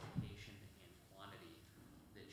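Faint voices talking around a meeting table, with a single dull thump just after the start, likely something knocking against the table or a table microphone.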